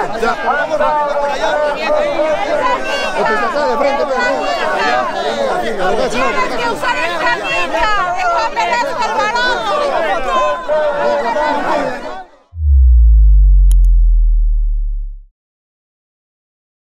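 Crowd chatter: many voices talking and calling out at once, close around. About twelve seconds in it cuts off and a deep bass boom with a falling tone, an end-logo sting, sounds loudly for about three seconds.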